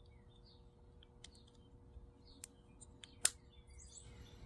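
Plastic halves of a Shurflo pump pressure-switch housing being pressed together: a couple of light clicks, then one sharper click a little past three seconds in as they snap shut. Birds chirp faintly in the background.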